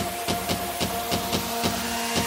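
Psytrance in a breakdown with the kick drum dropped out: a quick ticking percussion pattern, about four to five hits a second, over held synth tones.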